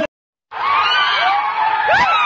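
About half a second of silence, then a large crowd cheering and shouting, with many high calls and whoops gliding up and down over each other.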